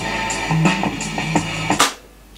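Guitar-led music with drums played through a homemade push-pull tube amplifier (ECC83 preamp, 6L6-type output tubes) into a speaker cabinet. The music cuts off with a click near the end as it is stopped.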